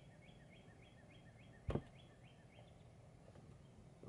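A rhinestone-studded metal snap hair clip clicking once, sharply, about halfway in, as it snaps shut while being forced open: the clip's spring is stiff and hard to open. Behind it, a faint high chirp repeats about three times a second.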